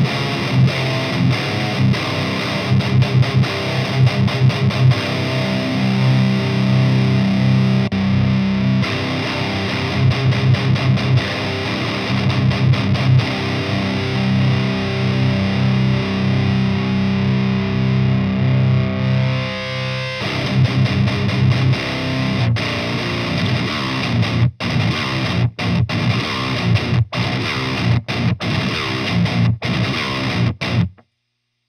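High-gain distorted electric guitar played through a Fortin tube amp into a 4x12 cabinet, boosted by an overdrive pedal: heavy low, palm-muted metal riffing. The tone changes about two-thirds of the way through, and near the end the riff becomes stop-start chugs with short silences between them.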